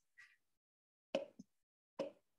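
A few short, faint knocks or clicks with near silence between: a soft tick just after the start, a sharper knock about a second in, and another at the very end.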